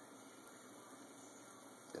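Faint, steady hiss from a running electrolysis setup: nail electrodes gassing in a jar of salt water, with small 12-volt cooling fans running.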